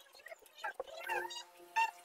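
Whiteboard marker squeaking against the board as someone writes: several short, high-pitched squeaks in quick succession, a few sliding in pitch.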